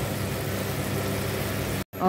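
Fish curry gravy sizzling and bubbling in a wok, a steady hiss that cuts off suddenly just before the end.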